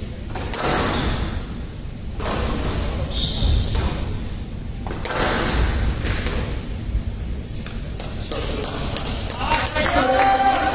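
Squash ball being struck and thudding off the court walls in a rally, a series of irregular sharp thumps over a background of voices.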